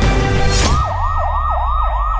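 Music cuts off about half a second in, replaced by a fast yelp siren: a wailing tone sweeping up and down about four times a second.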